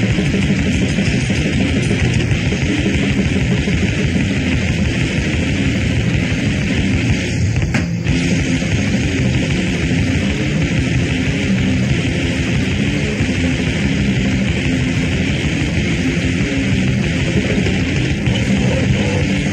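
Loud, dense, distorted hardcore punk recording, a continuous wall of noisy guitars and drums. There is a brief break a little before eight seconds in.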